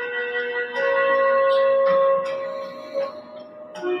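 Slow, ambient background music of long sustained notes with plucked, ringing onsets. A loud held note starts just under a second in and fades around three seconds, and a new lower note begins near the end.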